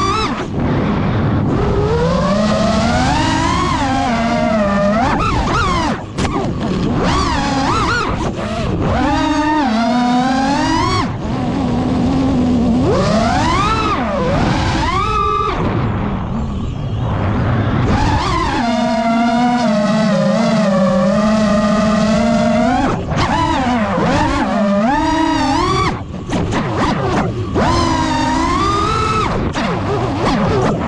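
FPV quadcopter's brushless motors whining, the pitch sweeping up and down steadily with the throttle, with brief throttle cuts about six seconds in and again near the end.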